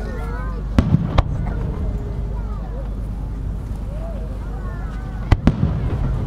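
Aerial fireworks shells bursting: a few sharp, loud reports about a second in, and another close pair near the end, each with a short echo.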